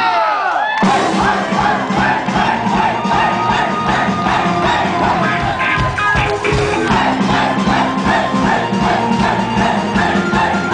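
Loud live synth-pop band playing, with a crowd cheering and shouting over the music. Near the start a falling sweep in pitch plays while the bass drops out for under a second, then the full band comes back in.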